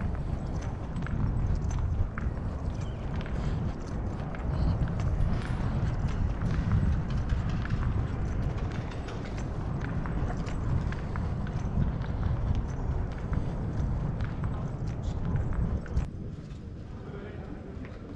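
Footsteps on stone paving with wind rumbling on the microphone while walking; the rumble eases about two seconds before the end.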